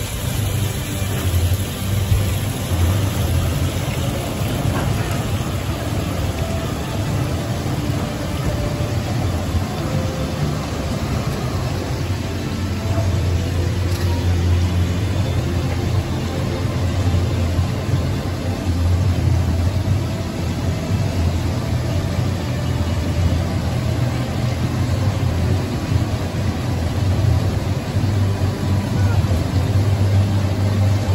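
Top Spin amusement ride running, its drive machinery giving a steady low hum under a continuous wash of noise as the gondola swings and flips.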